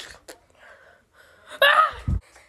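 A boy's short, loud gasping cry about one and a half seconds in, followed right at the end by a low thud.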